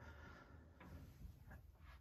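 Near silence: room tone with a couple of faint ticks.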